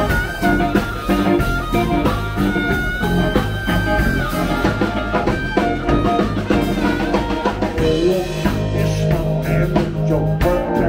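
Blues band playing live: a harmonica played into a handheld microphone carries the lead with long, bending notes over a drum kit and electric guitar.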